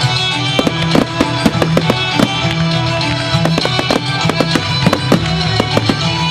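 Fireworks going off over music: a frequent, irregular string of sharp bangs and crackles from rising comets and small star shells, with the music playing steadily underneath.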